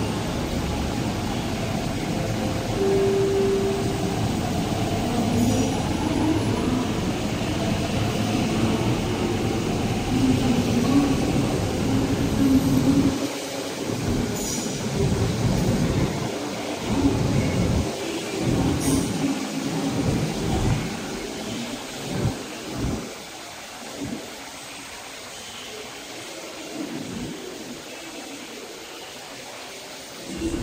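MTR East Rail Line R-train electric multiple unit pulling out of the station: motor and wheel-on-rail noise that stays loud through the first two-thirds as the cars roll past, then fades away, leaving quieter platform ambience for the last several seconds.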